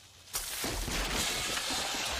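A sudden explosion about a third of a second in, with a burst of smoke, followed by a steady rushing noise that carries on.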